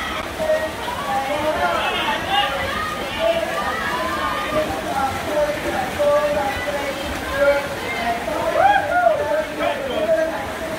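Several spectators' voices shouting and calling over one another, over the steady splashing of freestyle swimmers racing through the water.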